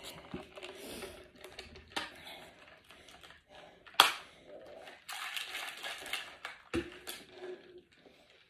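Handling noises of a plastic drink bottle and a paper card: scattered clicks and rustles, with one sharp click about four seconds in and a knock near the end.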